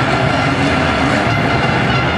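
Motocross motorcycle engines running hard at race speed, a loud, steady engine noise with no break.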